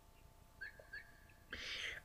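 Faint chirping of a small bird in the background, short chirps repeating about every half second. Near the end comes a sharp intake of breath.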